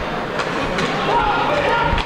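Ice hockey arena crowd noise during live play: a steady din of the crowd, with faint voices rising out of it about a second in.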